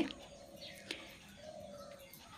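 Faint bird calls: a short falling chirp early on, then a low steady coo-like call in the second half, with a single soft click about a second in.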